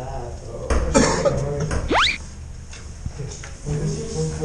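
A man coughing and muttering in a tiled bathroom stall, reacting to a stink spray, with a quick rising whistle-like sweep about two seconds in.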